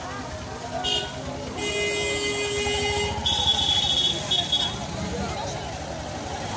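A vehicle horn honking several times through a crowded street market: a short toot about a second in, a longer blast of about a second and a half, then two shorter toots, with crowd chatter throughout.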